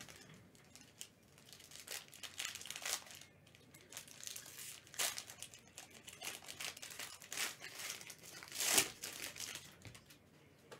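Foil and plastic trading-card packaging crinkling and tearing as a sealed box of cards is unwrapped, in irregular bursts, loudest shortly before the end.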